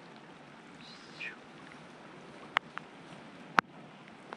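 Steady light rain falling, with a few sharp taps, the loudest about three and a half seconds in.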